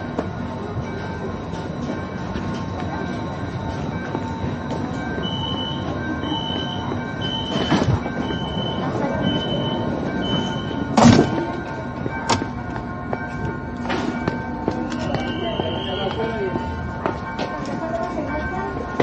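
Sarmiento-line electric train standing at the platform with a steady hum. Its door-closing warning sounds as six short high beeps about a second apart, then the doors shut with a loud thump. Scattered knocks and a brief rising whine follow.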